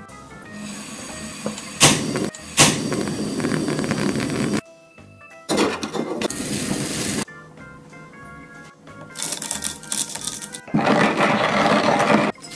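Background music over a Snow Peak HOME&CAMP cassette-gas burner being lit: two sharp clicks as the knob is turned about two seconds in, then the gas flame hisses steadily in stretches, with breaks between them.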